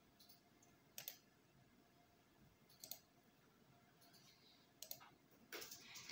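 A few faint, isolated computer mouse clicks, about one, three and five seconds in, over near silence.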